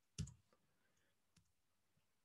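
A few isolated computer keyboard keystrokes over near silence, the first, about a quarter second in, the loudest, followed by two fainter ones.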